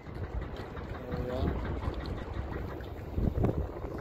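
Wind buffeting the microphone in uneven gusts, a low rumbling noise that is strongest about three seconds in.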